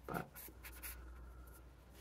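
Faint rustling and scratching as a ball of wool yarn with a paper ball band is handled, a few short crinkles.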